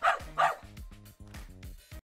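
Small dog barking twice in quick succession, over background music with a steady beat.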